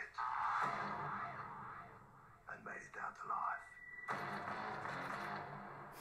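Movie trailer soundtrack playing back through a speaker into a small room: music and a rushing noise over the first two seconds and again over the last two, with a short stretch of voices in the middle.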